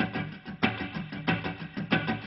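Semi-hollow electric guitar strummed in a steady sixteenth-note funk rhythm, a fast run of short strokes. The fretting hand is relaxed on the chord, so the strums come out choked and staccato, the typical funk rhythm-guitar sound.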